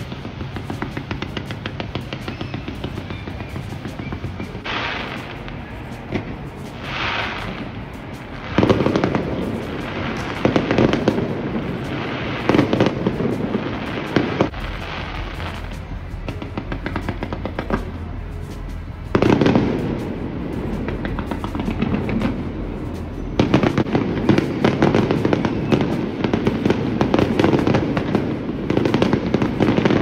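Fireworks display: continuous crackling and popping of aerial shells, with heavier, louder barrages starting about nine seconds in, again near twenty seconds, and through the last six seconds.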